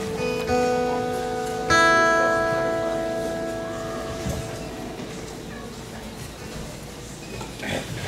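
Acoustic guitar: a note or two plucked, then a chord struck about two seconds in that rings and slowly dies away over the next few seconds.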